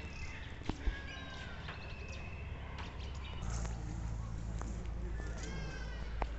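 Faint outdoor ambience with a few short, thin animal or bird calls and distant voices, plus a couple of light taps early on. A low steady rumble comes in about halfway through.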